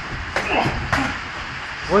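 Two short thuds from gloved MMA sparring, about half a second apart.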